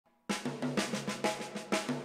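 Drum kit played with sticks: a fast run of about ten even strokes that starts sharply a moment in, the drum heads ringing with a low tone.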